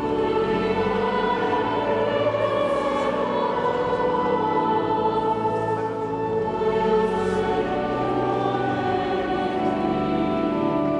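A large youth choir singing a sacred choral piece in long, sustained notes.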